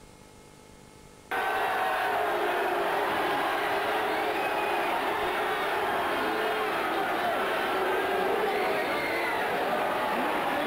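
Faint tape hiss and hum for about a second, then an abrupt cut in to a loud fight crowd shouting and cheering, many voices at once.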